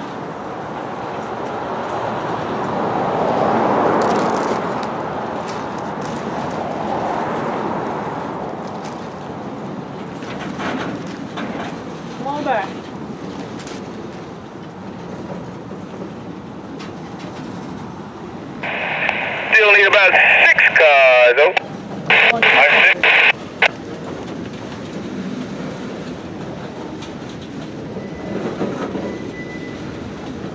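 Freight train of gondola cars shoving slowly in reverse at yard speed, with a steady rumble of steel wheels on rail. About two-thirds of the way through, a scanner radio transmission cuts in for several seconds: a crew member's voice, clipped and tinny, calling out car lengths for the coupling move.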